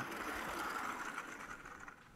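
Faint steady hiss of lecture-hall room noise, fading away over the two seconds.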